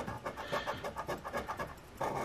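A coin scratching the latex coating off a scratch-off lottery ticket in quick, short strokes, several a second.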